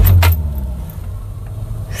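Motorhome gasoline engine, fitted with a Chinese copy of an Edelbrock four-barrel carburetor, firing up and revving briefly, then settling into a steady low idle within about half a second. It starts right up.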